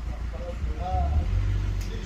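A steady low rumble with a faint voice about a second in.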